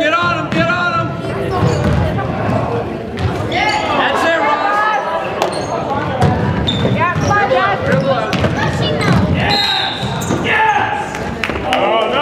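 A basketball bouncing on a hardwood gym floor during play, many short thuds, with spectators' voices calling out and the sound echoing around the gym.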